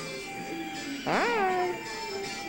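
Background music playing, with one loud, high-pitched vocal exclamation from a young girl about halfway through. It lasts about half a second and rises sharply in pitch before falling back.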